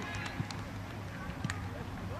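Outdoor soccer match sound: faint shouting from players and spectators over a steady low background, with a few short knocks, the sharpest about a second and a half in.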